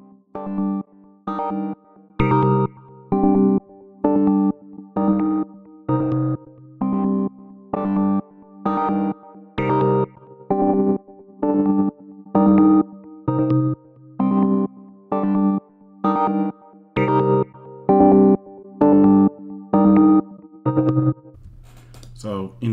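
A looped synth-keys lead melody of short, staccato chord stabs, about one a second, played through the Waves Brauer Motion auto-panner plug-in as its presets are switched.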